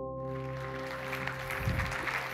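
The sustained ringing tones of the intro music fade out while audience applause comes in about a quarter of a second in and carries on.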